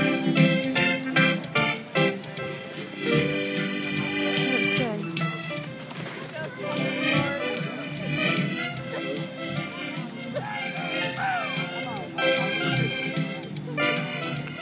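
Show organ music: an electronic organ playing sustained chords that change every second or so.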